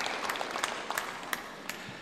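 Audience applauding with scattered, sparse claps that thin out and fade away toward the end.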